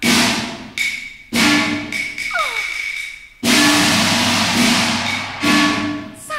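Cantonese opera percussion: gongs and cymbals struck in a short pattern, each stroke ringing on, with the longest crash lasting about two seconds from about three and a half seconds in.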